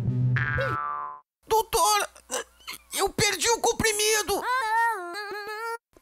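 Cartoon sound effects: a springy boing that sweeps up and rings for about a second, then after a short gap a few seconds of wordless, voice-like pitched sounds, short bending notes giving way to longer held, wobbling tones.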